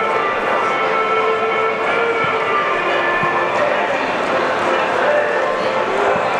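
Indistinct voices over a steady stadium background during a football warm-up, with a few faint short thuds of a ball being kicked.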